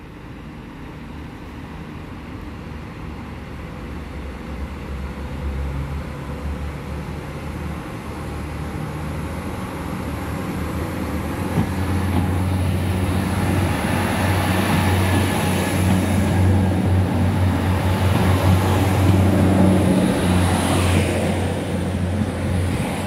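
Class 3000 diesel multiple unit (unit 3019) pulling away and coming past under power, its diesel engine hum and running noise growing steadily louder as it nears.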